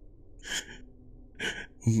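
Two short, breathy gasps from a man's voice, about a second apart.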